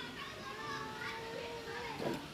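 Children's voices in the background, one of them holding a single long call for over a second.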